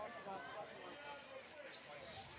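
Faint crowd chatter: many distant voices talking at once, with no single voice standing out.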